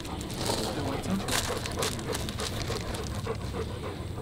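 A large dog panting quickly and steadily, about three to four breaths a second.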